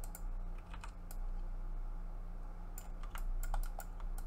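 Irregular clicks of a computer mouse and keyboard while working at a desktop computer, a quick run of them near the end, over a steady low hum.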